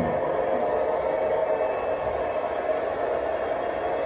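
A steady mechanical hum with a held mid-pitched tone, even throughout.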